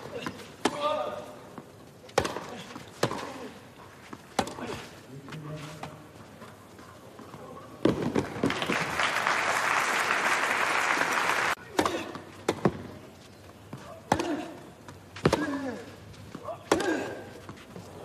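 Tennis rally on a clay court: sharp racket strikes on the ball about once a second, with player grunts on some shots. About eight seconds in, crowd applause lasts about four seconds and cuts off suddenly, and then another rally of racket hits follows.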